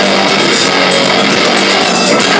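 Metal band playing live: distorted electric guitars, bass guitar and drum kit in a loud, dense, steady wall of sound, heard from within the audience with little deep bass.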